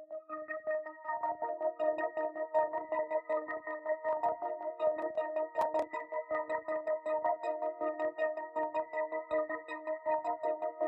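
Dark ambient synth pad loop from an Analog Lab preset, playing a short repetitive melody on one note across octaves, pitched up to D-sharp. It is heavily processed with wobble, EQ and a Portal granular "Ghost" preset, so the held tones flutter in rapid, uneven pulses.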